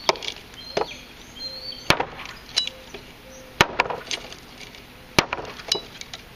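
Brightleaf chopping knife chopping into a thin stick of dry hardwood against a wooden block: about five sharp chops at irregular intervals of one to two seconds, with lighter knocks between them.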